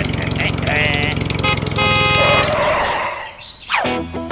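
Dubbed cartoon-style sound effects: a small engine's steady pulsing hum with a short laugh, a horn toot about two seconds in, a brief burst of noise, then a whistle sliding steeply down in pitch near the end.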